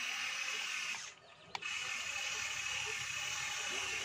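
Electric drive motors of a large remote-control Komatsu PC210-10 excavator model whirring steadily as the boom is raised. They stop for a moment about a second in, a sharp click sounds, and they run again.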